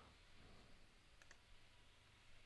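Near silence: faint room tone, with two quick, faint clicks of a computer mouse a little over a second in.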